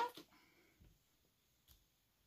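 Faint handling sounds as a clear acrylic stamp block is pressed onto paper and lifted off, with one small click near the end.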